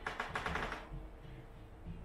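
A short, rapid rattle of clicks in the first second, over a low background rumble.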